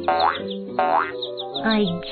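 Cartoon boing sound effects for trampoline bouncing: two springy rising glides about two-thirds of a second apart, over light background music.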